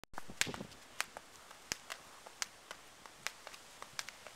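A child skipping rope on pavement: the rope slapping the paving and sandals landing in a steady rhythm, with sharp clicks about every 0.7 s and fainter taps in between.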